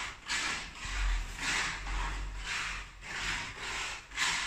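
A steel spatula scraped in repeated strokes across a wall's decorative paint coating, about two strokes a second.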